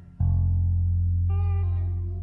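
Live church band music: a loud, low bass note comes in suddenly just after the start and is held, with higher chord tones above it that change about halfway through.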